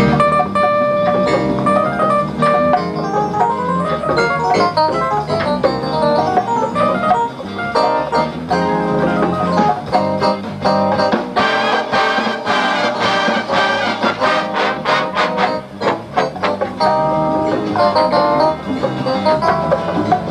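High school jazz big band playing, coming in with a sudden loud full-band entrance at the start.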